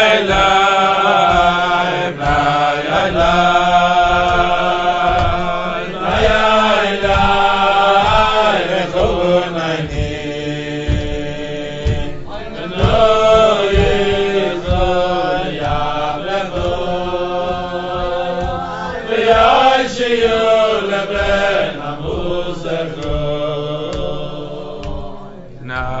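Voice chanting a slow melody in long, sliding held notes over a steady low drone, with low knocks keeping time underneath.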